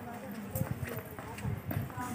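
Footsteps of two people walking across a concrete yard: a few soft, irregular steps, with faint voices in the background.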